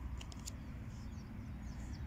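Playing cards being handled and slid on a cloth, with a few light clicks about a quarter to half a second in, over a steady low background rumble. Faint high bird chirps can be heard in the background.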